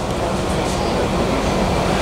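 Steady, fairly loud rumbling background noise with no distinct events, slightly swelling toward the end.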